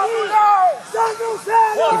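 Men yelling and whooping in celebration, one loud arching shout after another.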